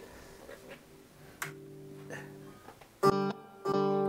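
Electric guitar: a few quiet picked notes ring about a third of the way in, then two loud chords are struck about three seconds in and left ringing.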